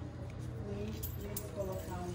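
Faint, indistinct speech in the background, with a couple of light clicks about a second in.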